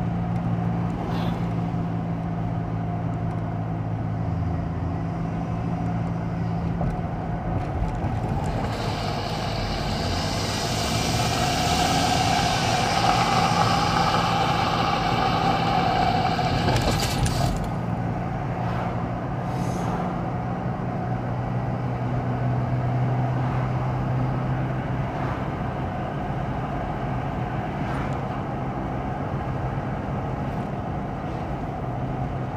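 Steady road noise inside a moving car at about 34 mph: a low engine and drivetrain hum under tyre rumble. A louder rushing noise builds from about nine seconds in and cuts off suddenly a little past seventeen seconds.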